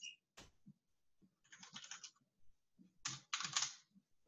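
Computer keyboard typing, faint: a single keystroke-like click shortly after the start, then two short quick runs of keys about one and a half and three seconds in, as a file name is typed into a save dialog.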